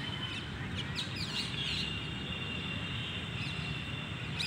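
Small birds chirping in quick short calls, thickest in the first second and a half, over a steady outdoor background hum, with a thin steady high tone running through most of it.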